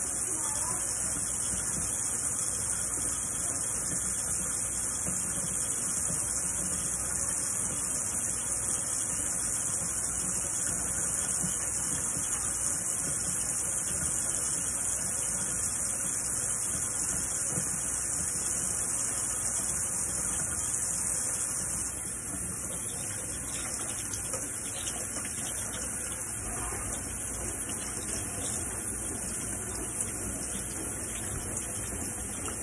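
Tap water running in a steady stream into a stainless steel sink while soapy hands are rubbed together. The rush of water is even throughout and drops a little in level about two-thirds of the way through.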